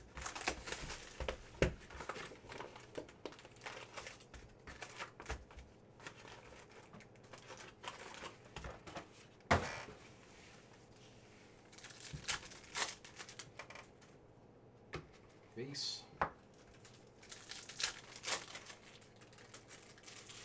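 A cardboard hobby box of trading cards being torn open and its foil card packs taken out and handled: a run of tearing and crinkling with scattered sharp rustles and one louder snap about halfway through.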